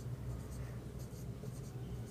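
Marker pen writing on a whiteboard in short strokes, over a steady low hum.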